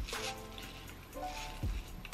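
Background music with a soft beat and held chords.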